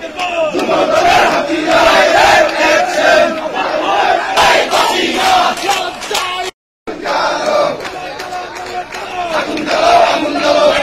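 A crowd of marchers shouting protest slogans together in loud repeated phrases. The sound cuts out completely for a moment about six and a half seconds in.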